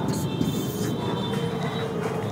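Steady background room noise, with a marker writing on a whiteboard.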